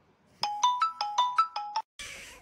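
A short electronic beeping melody of about eight quick notes, hopping between a few pitches, starting about half a second in, in the manner of a phone ringtone.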